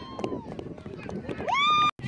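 Spectators' voices at the sideline: a drawn-out call fading about half a second in, then one loud, rising, held shout near the end that cuts off suddenly.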